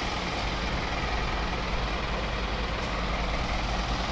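Semi-truck diesel engine idling: a steady, even low hum.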